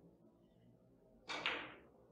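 Three-cushion billiard shot: the cue tip strikes the cue ball and balls clack together about a second and a quarter in, two hits close together ringing briefly in the room.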